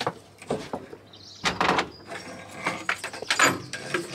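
The door of an outdoor shower cubicle being handled and pulled shut: a string of knocks and rattles, loudest about a second and a half in.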